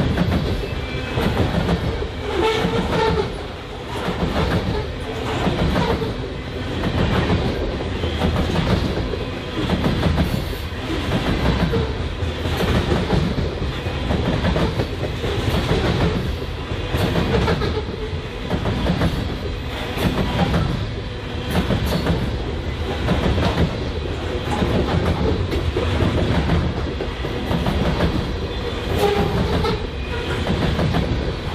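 Covered hopper cars of a BNSF grain train rolling past close by: a steady rumble of steel wheels on rail with a rhythmic clickety-clack, the loudness swelling about every second and a half as each car's wheel sets go by.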